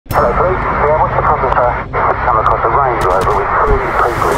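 A man speaking, his voice thin and narrow-sounding as if over a phone or radio line, over a steady low hum.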